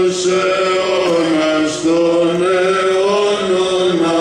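A male voice chanting a slow Greek Orthodox Byzantine hymn, long held notes gliding gently up and down over a steady low drone.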